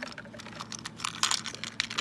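Small plastic toy groceries clicking and tapping as they are handled and set down on a plastic toy checkout counter: an irregular run of light clicks and taps.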